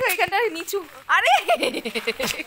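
People talking close to the phone's microphone, voices rising and falling in quick bursts.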